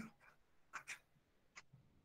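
Faint, brief scratches of a stylus on a writing tablet as a word is handwritten: a couple of short strokes about a second in and another near the end.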